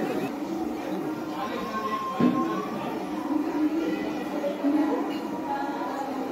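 Indistinct voices with music playing underneath, and one sharp knock about two seconds in.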